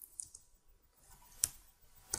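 A few faint clicks at a computer: a small cluster of light clicks at the start and one sharper click about one and a half seconds in.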